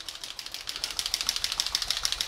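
AMMO by Mig acrylic paint dropper bottle being shaken, the agitator ball inside rattling in a fast, even run of sharp clicks to mix the paint.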